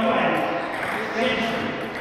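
Low, indistinct male speech over room noise, with no clear ball strikes.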